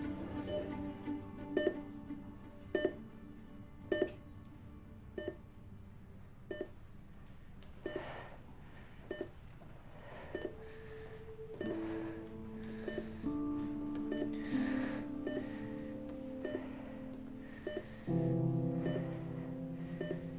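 Soft background music of held notes, growing fuller near the end. Over it, a hospital patient monitor gives short, regular beeps about once a second.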